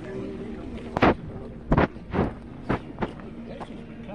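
A run of five or six sharp knocks over about two and a half seconds, starting about a second in, the first two loudest, with voices talking faintly in the background.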